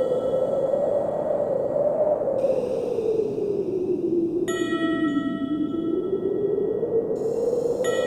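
Ambient music: a hollow, wind-like drone that slowly sinks and then rises in pitch. One ringing bell-like note is struck about four and a half seconds in and dies away.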